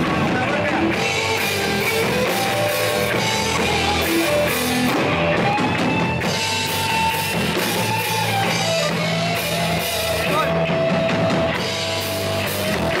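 Loud rock music with a drum kit and cymbals keeping a steady beat under electric guitar playing long held notes.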